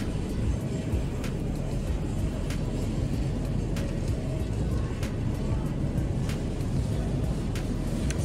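Steady low rumble of store ambience with faint music in the background and a few light clicks.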